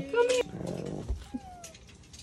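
A brief high-pitched vocal sound from a child, like a squeak or whimper, in the first half-second, followed by a quiet stretch with only a faint falling murmur.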